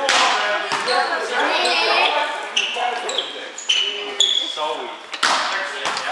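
Volleyball rally in an echoing gym: the ball is struck with sharp smacks at the start, just under a second in, and twice near the end. Sneakers give short high squeaks on the wooden floor in the middle, and players' voices call out.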